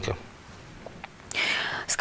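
A pause of low studio room tone, then a woman's short, audible intake of breath about a second and a half in, drawn as she readies to speak.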